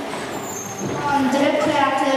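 Indistinct children's voices, with talking picking up about a second in.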